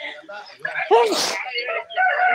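People's voices talking, with a loud, sharp, breathy vocal outburst about a second in.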